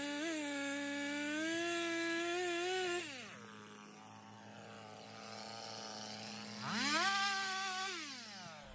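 Two-stroke chainsaw at full throttle cutting into a large log, dropping back to idle about three seconds in, then revving up again into the cut near the end.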